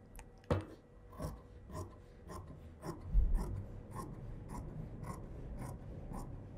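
Dressmaking scissors cutting through fabric in a steady run of snips, about two a second, each closing of the blades a short sharp click. A dull low thump sounds about three seconds in.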